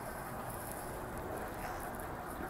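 Steady low background noise, room tone with no distinct sounds standing out.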